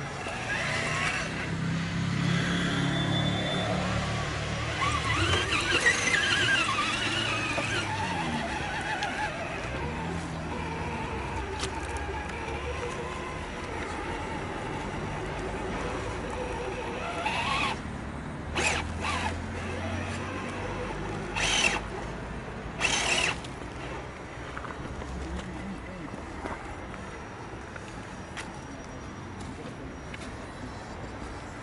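Electric motor and gears of a scale RC crawler whining as it is driven, the pitch wavering up and down in the first few seconds. Several short, louder bursts of whine come in the second half as the throttle is blipped.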